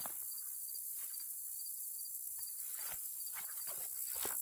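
Field crickets chirping, a high chirp repeating a few times a second over a steady high insect hiss, with brief rustling as a backpack is handled in the second half.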